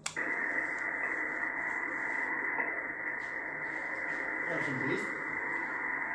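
Icom IC-775DSP transceiver's speaker giving steady narrow, muffled hiss of band noise on 40-metre lower sideband. It drops back to receive with a click at the start. A faint, weak voice comes through the noise about four and a half seconds in.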